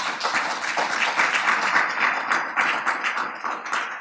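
Audience applause: many hands clapping in a dense, even patter that begins to fade near the end.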